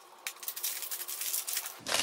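Packaging rustling and crackling in the hands as a small cardboard face-cream box is unwrapped, a quick run of dry crinkles lasting most of the two seconds.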